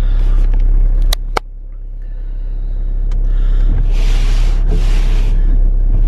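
A car heard from inside the cabin: a steady low rumble of engine and road, broken by two sharp clicks about a second in. From about four seconds in, the windscreen wipers sweep back and forth across frosted, wet glass, a swish just under a second long on each stroke.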